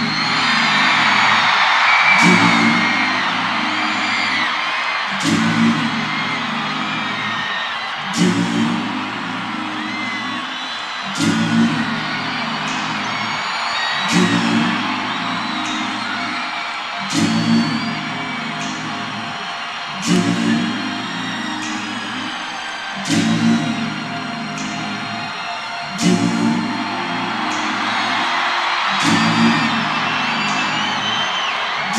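A large concert crowd screaming and whistling over a recorded intro: a low repeating figure that comes round about every three seconds, each time opening with a sharp hit. The screaming is loudest near the start and again near the end.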